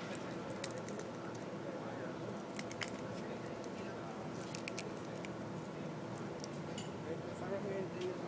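Indistinct murmur of people talking in the background over a steady low hum, with a scattering of short sharp clicks.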